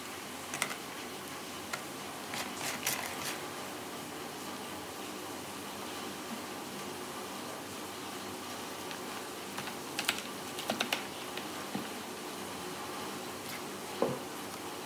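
Hard crab shells clicking and clattering against each other and the plastic basin as hands move the raw crabs around. The clicks come in scattered clusters, a few about two to three seconds in and a quick run around ten to eleven seconds in, over steady background noise.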